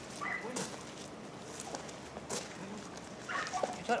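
Faint sounds of a dog, with scattered soft clicks and scuffs of steps on gravel; a person starts to speak at the very end.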